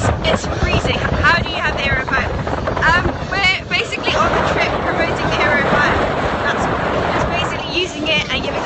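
Wind buffeting the camera microphone in a steady rumble aboard a sailing boat in rough sea, with a woman's voice coming and going over it.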